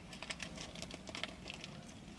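Biting into and chewing a paper-wrapped burrito, heard close up as a quiet run of small crisp clicks and crackles.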